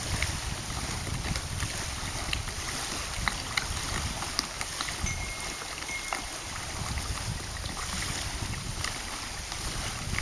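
Wind buffeting the microphone with a gusty rumble, over an even hiss of small waves on the lake, with scattered faint ticks. About five seconds in, a faint high steady tone sounds for about a second.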